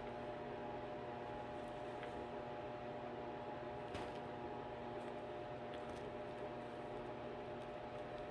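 Quiet room tone: a steady low electrical hum, with one faint click about four seconds in.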